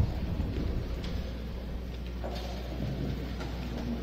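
Low steady rumble and hiss of room noise picked up by a cluster of press microphones, with a single sharp thump right at the start.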